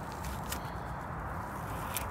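Steady background hiss with two faint short clicks as a small stump puffball is torn in half by hand, a soft handling sound.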